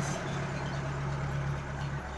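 An engine idling steadily, a low even hum.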